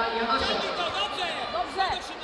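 Several indistinct voices calling out over crowd chatter, no one voice close or clear.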